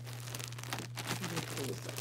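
Clear plastic bag crinkling and rustling as a skein of yarn is pulled out of it, a quick run of small crackles, with faint voices in the middle.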